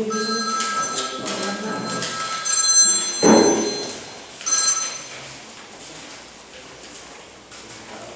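Mobile phone ringing with an electronic ringtone of several steady high tones for about three seconds, then briefly again about four and a half seconds in. A short loud sound comes just after three seconds.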